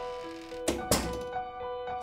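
Two thuds in quick succession a little under a second in, about a quarter second apart, over background music with sustained held notes.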